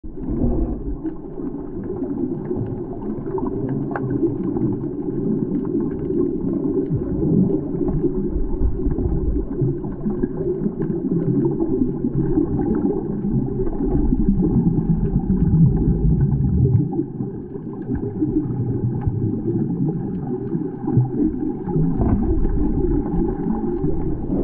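Underwater sound picked up by an action camera in its waterproof housing: a steady, muffled low rumble of churning water around swimmers, with scattered faint clicks.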